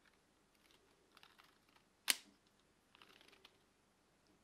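LEGO Technic plastic parts of a rubber-band crossbow pistol clicking and rattling as it is handled and worked, with one sharp snap about halfway and a run of small clicks after it.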